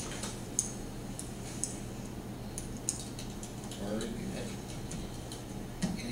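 Quiet meeting-room tone: a steady low hum with scattered light clicks and ticks, and a brief low voice about four seconds in.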